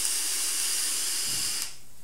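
A long drag on a box-mod vape: a steady airy hiss of air drawn through the tank and the firing coil, stopping suddenly about a second and a half in.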